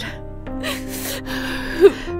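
Soft sustained background music under a woman sobbing: a long breathy in-breath about half a second in, then a short sharp sob near the end.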